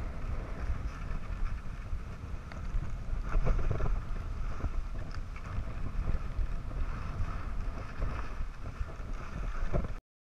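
Wind buffeting the microphone of a camera carried by a skier on the way down, with the skis hissing and scraping over packed snow; it is loudest about three to four seconds in.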